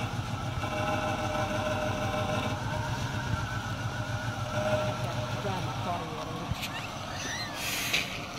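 Cadillac Eldorado's V8 engine running as the car pulls away and drives off, with a brief hiss near the end.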